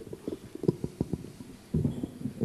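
Handling noise from a lectern microphone on a boom stand being gripped and adjusted: a quick string of dull knocks and rumbles, with a louder cluster near the end.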